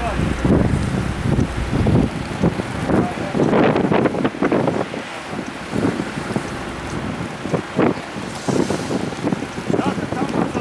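Wind buffeting the microphone, with indistinct voices of people nearby coming and going.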